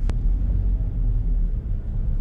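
Steady low rumble inside a car moving slowly in a traffic jam: engine and road noise heard from the cabin, with a single brief click just after the start.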